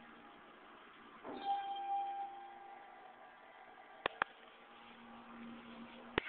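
Richmond elevator arrival chime: a single ringing tone about a second in that fades away over the next second or so. Two sharp clicks follow about four seconds in.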